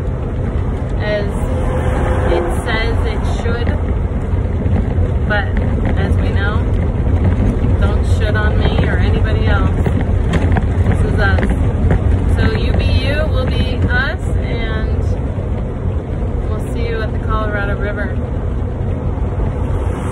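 Steady low drone of an RV's engine and road noise heard inside the cab while driving, with a woman's voice over it at times.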